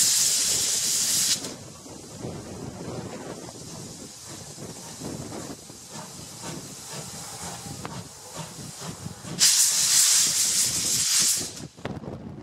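C11 steam locomotive blowing steam from its cylinder drain cocks with a loud hiss, which cuts off about a second in. The locomotive then rolls slowly past with a quiet rumble and light knocks from its wheels and rods. Near the end the loud steam hiss starts again for about two seconds, then stops.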